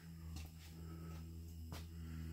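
Faint room tone: a steady low hum, with two soft ticks, one about a third of a second in and one near the end.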